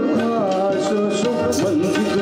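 Live Nepali song: tabla strokes and a harmonium under a wavering sung melody, with a guitar in the ensemble.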